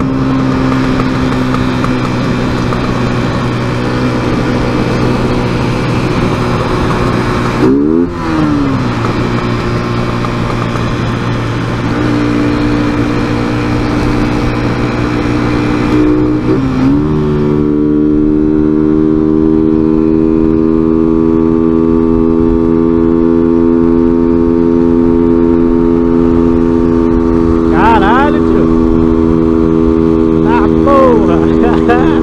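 Motorcycle engine running at highway speed under road and wind noise. The revs dip briefly twice, about a third and halfway through. After the second dip the engine runs at a higher, louder pitch.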